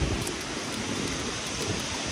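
Steady rushing of a waterfall: an even wash of falling-water noise, with a brief low thump at the very start.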